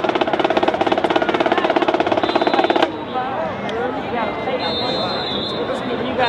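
Marching band holding a loud brass chord over a fast, even drum roll that cuts off sharply about three seconds in, followed by crowd voices and shouting.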